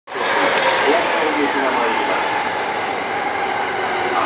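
JR 209 series 500 electric commuter train rolling in along a station platform as it arrives, a steady loud rumble of wheels and running gear with a faint steady whine from its Mitsubishi IGBT-VVVF inverter.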